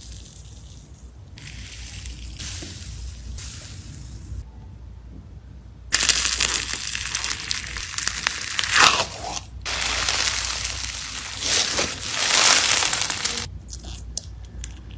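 Fingers pressing and squeezing slime in a tub: a soft, quieter fizz from an icee-texture slime, then after a short gap a much louder, gritty crunching from a sand-fizz textured slime, swelling with each squeeze.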